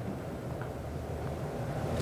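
Steady background room tone: a soft even hiss with a low hum underneath, and no other event.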